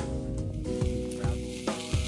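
Diced potatoes and meat sizzling on a flat-top camp griddle, with a metal spatula scraping and tapping on it a few times. Music with held notes plays underneath.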